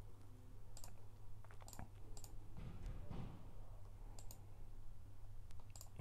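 About five faint, sharp computer-mouse clicks, spaced irregularly, over a low steady hum.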